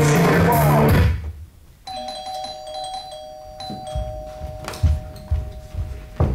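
Rock music with guitar cuts off suddenly about a second in. Just before two seconds in a doorbell chime starts, a held two-tone ring with high ringing notes over it, lasting about four seconds, while a few dull thumps sound about once a second.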